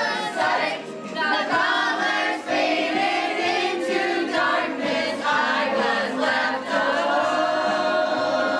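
A group of female voices singing a song together as an amateur chorus.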